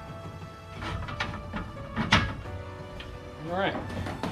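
A few knocks and clanks of steel bed-rack bars being set onto a pickup's bed rails, the loudest about two seconds in, over background music.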